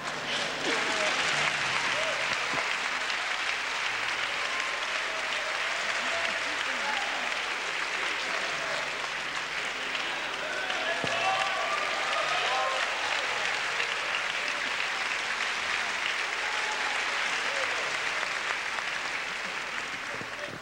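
Church congregation applauding and cheering after a baptism by full immersion, with scattered shouts over the clapping. It starts about half a second in and holds steady throughout.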